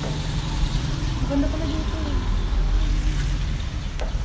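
A steady low rumble, with a faint voice heard briefly between about one and two and a half seconds in.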